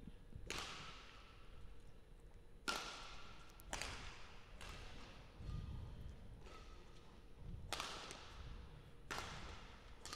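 Badminton racket strings striking a shuttlecock during a rally: about seven sharp hits roughly a second apart, each ringing out in a large, echoing hall. Between the hits come a few dull thuds of footwork on the court.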